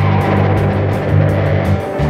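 Live rock band playing an instrumental passage without vocals: distorted electric guitar and bass over drums, with a steady cymbal beat.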